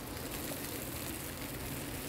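Steady, even hiss of a working kitchen while two saucepans cook on portable burners and are stirred, with a low hum underneath.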